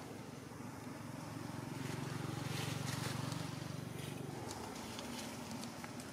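A low rumble that swells about two seconds in and fades out by about four and a half seconds, over faint rustling and ticks.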